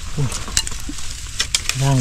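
Dry bamboo twigs and leaves crackling as they are pushed and handled, a scatter of sharp little snaps and clicks.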